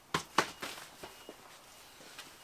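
Two sharp knocks close together, the second louder, then a couple of faint taps: small items being picked up and handled off a concrete floor.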